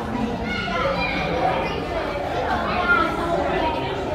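Indistinct chatter of visitors, with children's voices among it.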